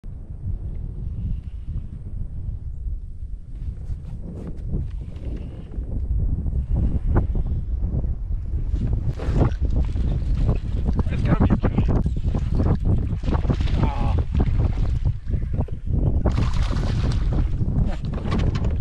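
Wind buffeting the microphone with a steady low rumble. In the second half it grows louder and busier, with many sharp knocks and rustles and a brief hissing burst near the end.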